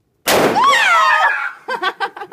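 An oxy-acetylene-filled balloon explodes with a single loud bang about a quarter second in. A high, wavering scream follows at once, then bursts of laughter near the end.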